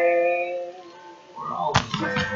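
A voice holding a long sung note that fades out about a second in. Near the end, a thump as the webcam is picked up and moved.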